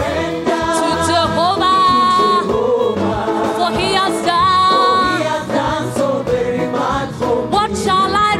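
Live gospel worship song: a woman leads the singing with men singing backing harmonies, over band accompaniment.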